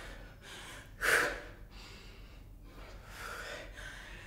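A woman breathing hard from exertion during a dumbbell exercise: several audible breaths, the loudest a sharp one about a second in.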